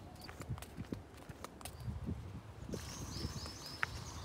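Quiet footsteps on paving at a walking pace, soft irregular thumps mixed with handling noise from a handheld phone. Faint high, repeated chirps come in during the second half.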